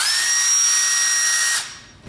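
Cordless drill running under the trigger: it spins up quickly into a steady high whine, then stops about a second and a half in and winds down.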